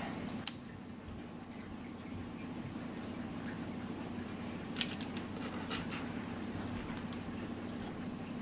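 Faint handling noise of fabric and satin ribbon being gathered and pinned by hand, with two small sharp clicks, one about half a second in and one near five seconds, over a steady low hum.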